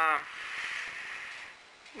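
A single breath through a neoprene face mask: a hiss lasting just over a second, fading out.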